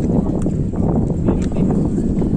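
Small-sided football on artificial turf: players' voices calling out over a steady low rumble, with scattered short knocks of footfalls and ball contact.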